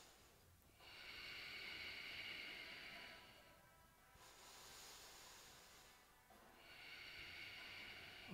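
Slow, faint, audible breathing during a held yoga pose: three long breaths of two to three seconds each, with short pauses between them.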